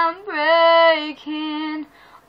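A young girl singing solo with no accompaniment: held notes with a short break about a second in, then one more held note that stops near the end.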